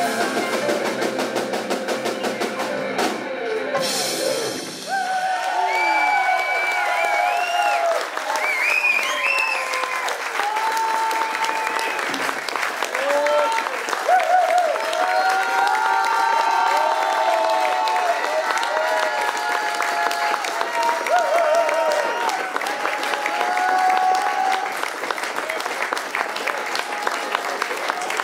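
A live rock band plays the last bars of a song with drums and guitars, stopping about five seconds in. The audience then claps and cheers, with scattered whoops, for the rest of the time.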